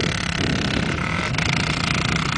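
Dirt bike engine running steadily, an even low drone with no change in pace.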